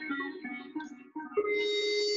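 Synthesized organ-like notes from a Skoog tactile music controller played through its iPad app: a run of short notes at changing pitches, then one long held note starting a little over halfway through.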